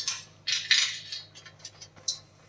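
Light metallic clinks and clicks of a 13 mm wrench working on the steel bolts of a trencher's handle bracket, with a short scrape about half a second in.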